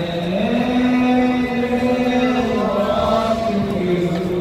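A single voice chanting in long held notes that step slowly up and down, in the manner of a Muharram noha recitation.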